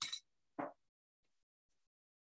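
Two short light clinks about half a second apart, the first bright and sharp, the second duller and lower.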